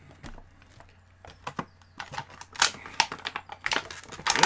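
Clear plastic packaging crinkling and clicking as a vinyl figure is unpacked from its box: a scatter of short, sharp crackles, sparse at first and busier in the second half.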